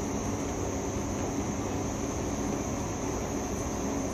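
Steady background noise: an even hiss with a faint constant high-pitched whine running through it and no distinct sound event.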